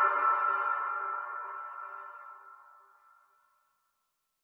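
The final held chord of an improvised instrumental track ringing out and fading away, dying to silence just under three seconds in.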